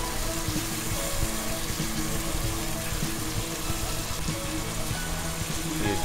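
Onions and tomato pieces sizzling in hot oil in an aluminium kadhai as they are stirred with a metal spatula, a steady hiss, with faint background music under it.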